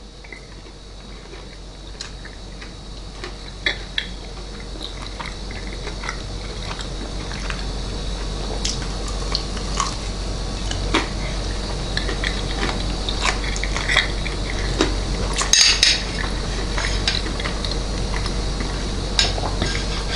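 Chewing a bite of breaded boneless chicken wing, with scattered small clicks of a metal fork. A low steady hum and hiss underneath grows gradually louder.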